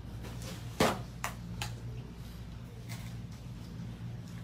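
Small objects set down and handled on a hard countertop: one sharp click about a second in, then a few lighter taps, over a steady low hum.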